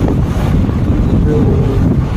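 Steady low rumble of wind buffeting the microphone, with a faint voice briefly about halfway through.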